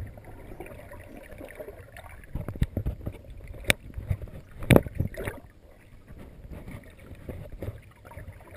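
Water heard from a camera held underwater: a low, uneven rush of moving water and bubbles, with several sharp knocks in the middle, the loudest about two-thirds of the way in, then quieter.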